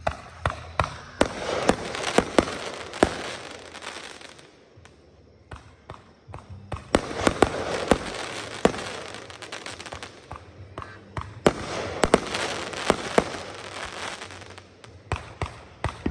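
Aerial fireworks going off: sharp bangs of shells launching and bursting over a crackling hiss. They come in three volleys, with lulls about four seconds in and about ten seconds in, and a few more pops near the end.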